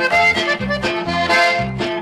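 Button accordion playing an instrumental melody line in a Tex-Mex ranchera, over a steady, regular bass rhythm.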